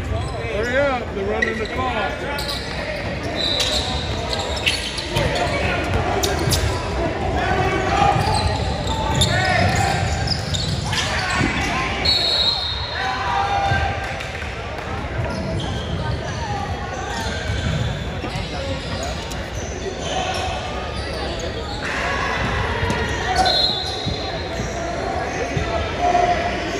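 Indoor basketball gym ambience: a basketball bouncing on the hardwood court and voices echoing around a large hall, with a few short high-pitched squeaks.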